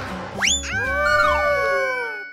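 Cartoon lion cub's long, drawn-out cry, rising sharply at the start and then held, over children's cartoon music. A brief whoosh comes just before it, and a quick descending run of notes sounds under the held cry.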